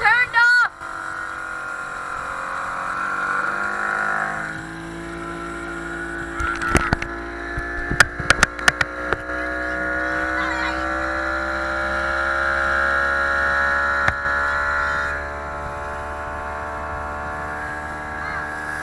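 Small motorboat's engine running at speed. It eases off about four seconds in, then climbs slowly in pitch until it drops back near fifteen seconds. A quick run of sharp knocks comes between about seven and nine seconds.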